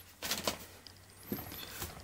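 Faint clicks and soft taps of a clear polycarbonate phone case with a TPU bumper being handled in the hands, a couple of clicks early and a patter of small ticks near the end.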